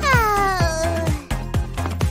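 A cartoon child's whining cry that slides down in pitch over about a second, over upbeat background music with a steady beat.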